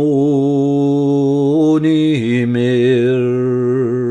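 A man singing a Scots traditional ballad unaccompanied, holding a long sung note that steps down to a lower held note about two seconds in.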